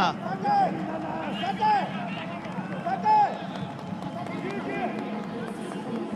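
Men shouting during a football match: short, loud calls about half a second, one and a half and three seconds in, among other scattered shouts over a steady open-stadium background.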